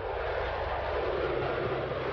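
Jet engine noise from a Sukhoi Su-47 Berkut climbing steeply just after takeoff: a steady, even rushing sound.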